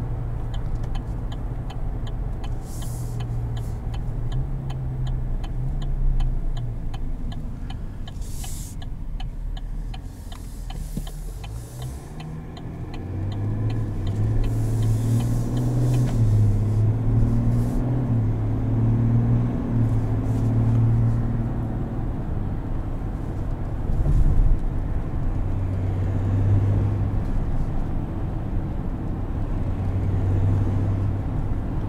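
3.0-litre Duramax inline-six turbo diesel of a 2021 Chevrolet Silverado, heard from inside the cab while driving. The engine note dips about ten seconds in, then rises and strengthens from about thirteen seconds as the truck accelerates. A rapid light ticking runs through roughly the first nine seconds.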